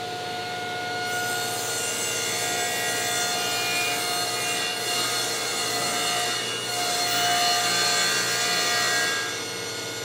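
Table saw running and cutting through a long, thick wooden board: a steady motor whine under the dense noise of the blade in the wood. The cutting noise eases slightly near the end while the saw keeps running.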